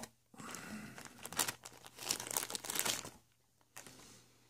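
A thin clear plastic bag crinkling as it is handled and opened, which breaks off shortly before the end, followed by a single sharp click.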